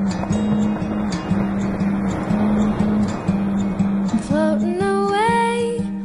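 Soundtrack song: an instrumental intro with a repeated low note in a steady rhythm under a rising wash of sound, then a singer comes in about four seconds in.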